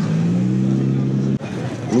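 A car engine running close by, a steady low hum that cuts off suddenly about two-thirds of the way through, leaving quieter street noise.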